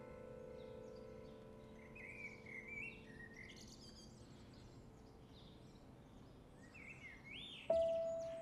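Small birds chirping and twittering, in one cluster about two seconds in and another near the end. Underneath, a soft piano note fades away, and a new piano note is struck just before the end.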